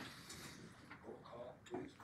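Quiet room with a few faint clicks and light knocks as people settle into their seats at a meeting table.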